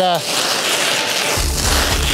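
Plastic stretch wrap being pulled off a handheld dispenser roll and wound around a moving-blanket-covered sofa: a steady hiss, with a low rumble joining in for the last half second or so.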